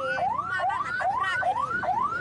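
Electronic siren sounding a rapid, repeating rising whoop. Each sweep climbs in pitch and then drops back sharply, about two and a half sweeps a second, steady throughout.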